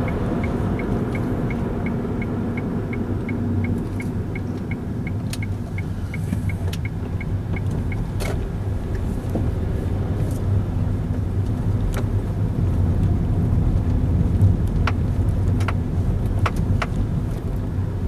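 Inside a moving car: steady engine and road rumble, with the turn-signal indicator ticking about three times a second through a turn. The ticking stops about eight seconds in, and a few single sharp clicks come later.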